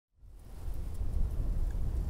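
Wind buffeting a microphone: a low, rumbling rush of noise that fades in from silence and grows louder.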